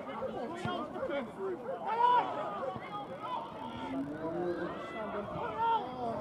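Overlapping, indistinct voices of spectators and players calling across a football pitch during play, with one louder shout about two seconds in.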